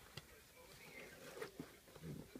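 Near silence, with a few faint clicks and rustles of hands handling a box of packaged pads and tampons.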